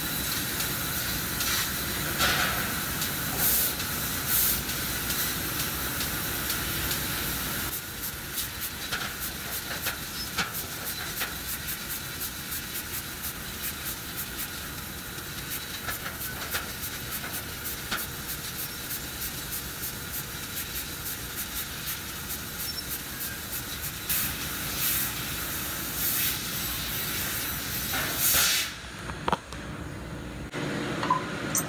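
Fiber laser cutter cutting thin stainless steel sheet: a steady hiss of cutting gas from the nozzle, broken by many short clicks as the head works through the pattern. Near the end there is a louder burst, then the hiss stops as the cut finishes.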